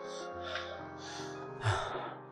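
Held chords of drama score music under a man's heavy gasping breaths, four sharp breaths, the last and loudest near the end.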